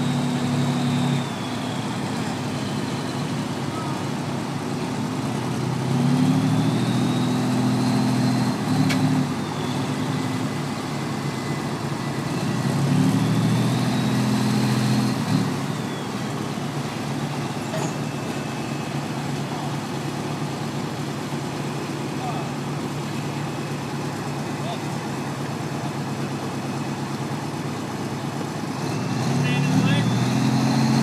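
Modified pulling tractor's engine idling, revved up briefly about six seconds in, again about thirteen seconds in and once more near the end, with a faint high whine that rises and falls with the revs.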